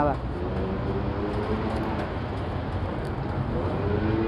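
City street ambience: a steady hum of road traffic with faint voices in the background.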